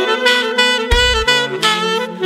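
Several multi-tracked saxophone parts playing together in an a cappella-style pop arrangement: a held low bass line under higher melody and harmony lines. Short low thumps mark the beat twice, about a second in and near the end.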